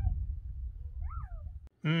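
Wind rumbling on the microphone outdoors, with a faint short rising-and-falling animal call about a second in. The rumble cuts off abruptly near the end, where a man's hummed 'Mmm' begins.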